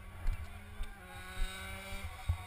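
A 125cc race motorcycle's engine running at low, steady revs, its pitch stepping down slightly about halfway through, over irregular low thumps.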